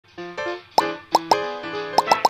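Light intro music with cartoon pop sound effects: four quick rising blips, each a short 'plop', in step with location pins popping onto an animated map.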